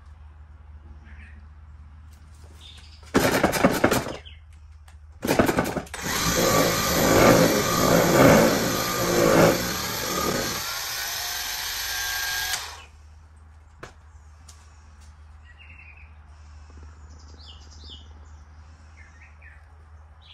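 Cordless polisher with a foam pad spinning inside a Lake Country System 4000 pad washer, the washer's pumped water jets splashing into the spinning pad to clean it. Two short bursts come first, then a longer run of about six seconds with splashing that cuts off suddenly.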